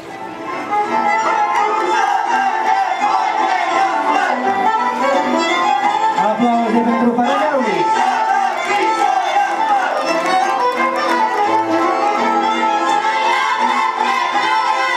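Fiddle-led Romanian folk dance music starts about a second in and keeps a steady, lively tune for the couples' dance that was announced as a peciorească.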